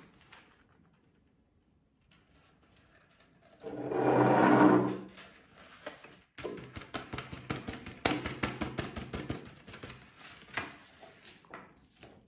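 Rolled paper sheet worked inside a small glass jar: a brief rub against the glass about four seconds in, then rapid light tapping for several seconds as ultrafine graphite powder is shaken down the paper into the jar.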